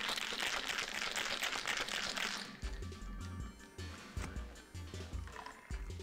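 Ice rattling hard in a cocktail shaker as it is shaken, stopping about two and a half seconds in. A low, stepping bass line of background music carries on through the rest.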